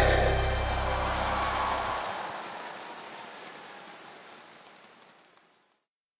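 The last chord of a live Cantopop song ringing out, its bass cutting off about two seconds in, under a haze of audience applause; everything fades out to silence a little over five seconds in.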